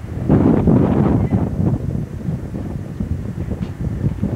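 Wind buffeting the camcorder microphone: a loud low rumble that starts suddenly, is strongest in the first second and a half, then eases off a little.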